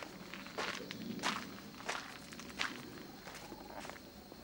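Footsteps of someone walking along a garden path: about four steps, roughly two-thirds of a second apart, then they die away near the end as the walker stops.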